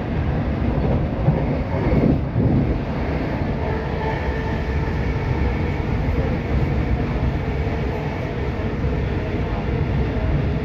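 Interior of a Class 319 electric multiple unit running at speed: a steady rumble of wheels and running gear on the track, with faint steady tones over it.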